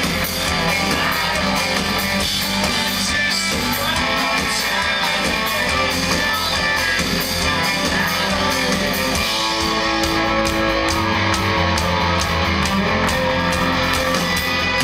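Live rock band playing loud through a club PA, guitars strummed over drums, heard from within the crowd. The drum hits stand out more sharply in the second half, where one note is held for a couple of seconds.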